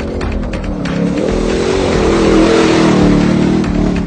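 Engine of a 4x4 off-road race vehicle running at high revs as it passes close, growing louder to a peak a little past halfway and then easing off, with music playing underneath.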